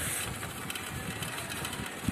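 Road ambience: a steady background hiss with many small irregular rattles and clicks from slow road traffic such as bicycles and a cycle van.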